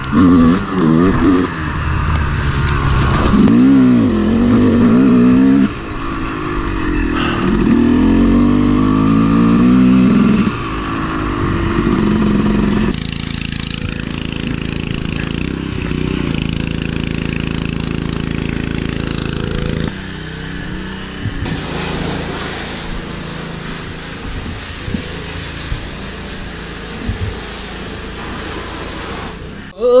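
Yamaha YZ250 two-stroke dirt bike engine revving up and down in repeated surges while being ridden, then about 13 seconds in settling to a lower, steady idle as the bike stops.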